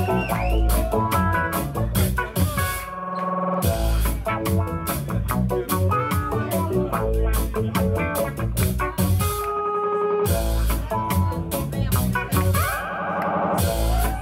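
Live instrumental passage of acoustic guitar with a drum kit. The drums drop out briefly three times, about two and a half, nine and a half and thirteen seconds in, while the guitar notes hold, then come back in.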